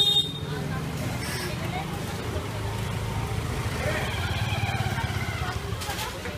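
Busy street ambience: a steady low rumble of traffic with people's voices in the background.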